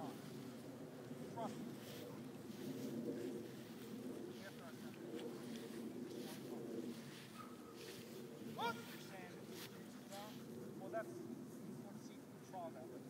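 Indistinct voices over a steady low murmur, with a few short rising squeaky calls, the loudest about nine seconds in.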